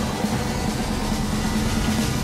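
Loud, steady movie-style rumble with a held low drone that starts suddenly as the guitar music cuts off, leading into an explosion effect.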